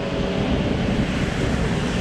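Wind blowing across the microphone: a steady rushing noise with a heavy low rumble.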